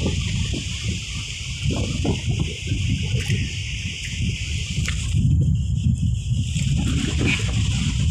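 Shallow sea water sloshing and splashing around a person standing waist-deep, as hands work a fishing net under the surface, over a constant low rumble.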